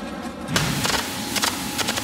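Background music with a steady sustained tone, joined about half a second in by the loud crackling hiss of electric arc welding, full of sharp ticks.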